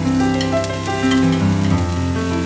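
Sliced shallots sizzling in hot oil in a stainless steel frying pan, with a few light clicks of chopsticks stirring them against the pan. Piano background music plays over it.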